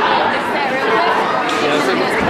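Crowd chatter in a large hall: many spectators' voices talking and calling out over one another.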